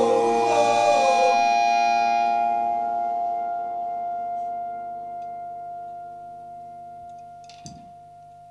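A rock band's last chord rings out and slowly fades away, leaving a few held notes that die down over several seconds. A small knock sounds near the end.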